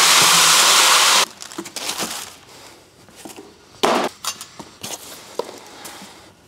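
A cardboard box of car parts shoved across a concrete floor: a loud scraping rush lasting just over a second that stops abruptly, followed by scattered clinks and knocks of loose metal parts being handled, the sharpest about four and five seconds in.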